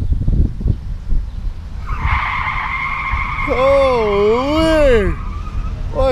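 Low rumbling with uneven thumps, then a steady high whine for about three seconds; over the whine a voice makes a long, wavering sound that rises and falls twice.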